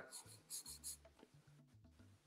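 Faint scratching of a drawing tool on paper as a shape is sketched, a few short strokes in the first second.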